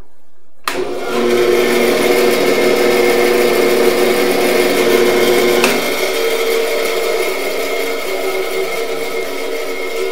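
Delta 14-inch band saw switched on under a second in, its motor and blade then running steadily with no load, a steady hum with several tones. It runs freely, nothing binding on the newly set guide bearings and blocks.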